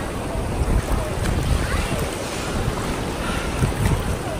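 Sea surf washing around, with wind rumbling on the phone's microphone.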